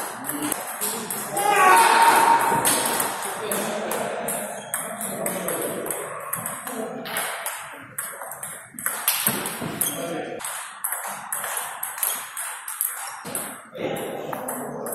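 Table tennis ball clicking off the rackets and the table in quick rallies. A raised voice about two seconds in is the loudest sound, with voices in the background.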